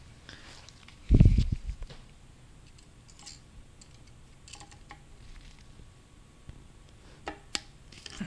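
A dull thump about a second in, then scattered light metallic clicks of circlip pliers working at a circlip in a transmission case's bearing bore, two sharp ones close together near the end.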